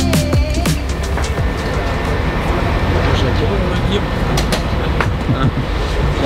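Background music stopping about half a second in, giving way to the steady noise of a coach on the move, mixed with indistinct voices.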